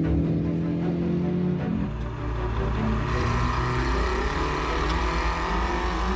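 Background music with long held notes, joined after about two seconds by the Spec Racer Ford's 1.9-litre engine running on track, its pitch rising and falling.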